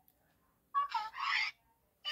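A high-pitched voice giving one short two-part call, starting a little under a second in.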